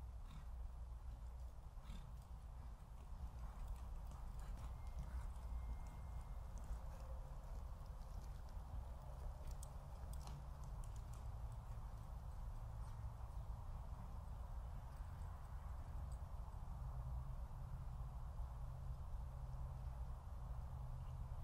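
Horse hoofbeats on arena dirt, faint irregular clicks that cluster around the middle as a ridden horse walks past close by, over a steady low rumble.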